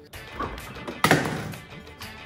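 A refrigerator door is pulled open, with a sharp thunk about a second in that fades away, over background music.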